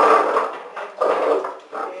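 A man coughing three times in a small room: three short, rough coughs about a second apart.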